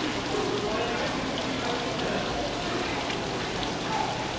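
Ornamental fountain running, its thin streams of water splashing steadily into the basin.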